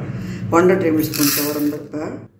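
Split chana dal rattling into a steel pot as it is poured from a brass bowl, heard under a woman's narration.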